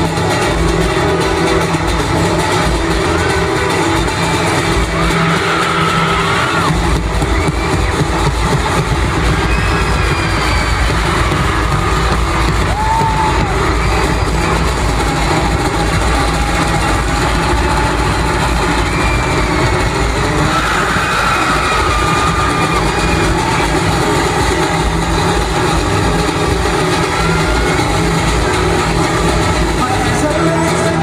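Live amplified concert music, recorded from among the audience in an arena, with the crowd cheering over it.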